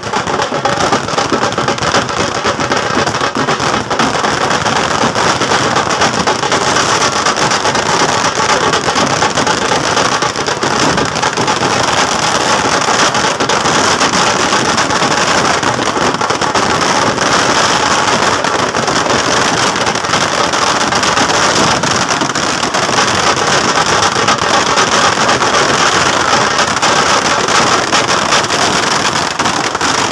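A long string of firecrackers going off on a road: small bangs packed into a dense, unbroken crackle.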